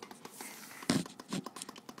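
A dog's claws scraping and clicking on a hardwood floor as it paws to reach something under furniture, with a sharper knock about a second in.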